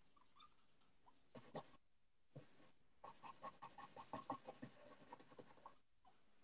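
Faint scratching and tapping of a pen drawing on paper, in short irregular strokes. It starts about a second in and gets busier over the last three seconds.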